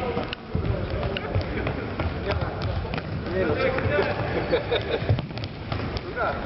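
Futsal play on a hard indoor court: scattered thuds of the ball being kicked and of players' footsteps, with players shouting to each other in the second half.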